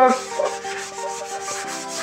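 A metal kadai being scrubbed by hand with a scouring pad, a steady rasping rub of the pad against the metal.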